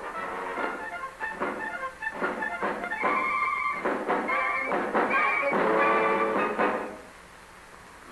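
Orchestral music with strings playing a short theme that stops about seven seconds in: a radio station's sign-on music as the station goes on the air.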